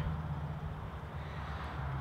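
Steady low hum with faint background noise and no distinct events.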